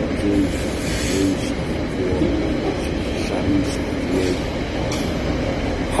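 Freight train of container wagons passing at close range: a steady rumble of wheels on rail, broken by irregular sharp clicks.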